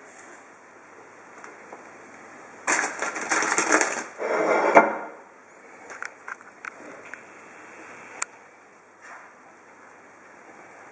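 Knife sawing through a layered sandwich on a plastic cutting board: a scratchy cutting burst a few seconds in, about a second and a half long, then a second shorter burst. It is followed by a few light knocks and taps as the pieces are handled.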